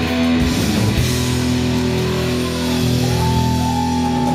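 Country band playing live on electric and steel guitars, bass and drums, holding steady sustained notes; about three seconds in a high note slides up and is held.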